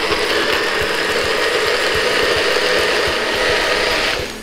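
Nutribullet blender motor running steadily, blending a thick smoothie of frozen berries, kale, nuts and seeds, milk and banana.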